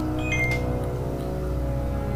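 A steady low hum carrying several sustained tones, with a few short high tones about half a second in.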